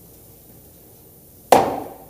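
A single sharp knock on a wooden desk, struck by a hand, about one and a half seconds in, dying away over about half a second.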